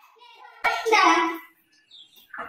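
A short, loud, high-pitched vocal cry from a young voice, starting a little over half a second in and lasting under a second.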